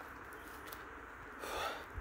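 Faint outdoor background with a low rumble, and near the end one short, breathy exhale close to the microphone.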